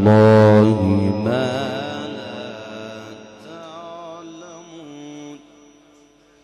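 Quran recitation in the melodic mujawwad style by a male reciter: a long, ornamented held note with a wavering pitch ends about a second in. A fainter trailing voice follows and fades out over the next few seconds.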